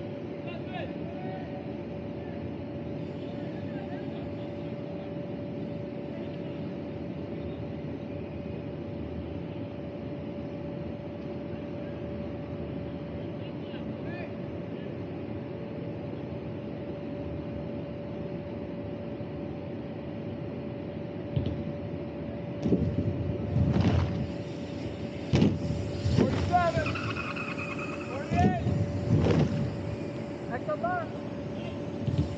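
Inflation blower of an airbag lander running steadily, a constant hum with a steady whine, powered by a generator. In the last several seconds, several loud thumps and rushing noise, with shouts.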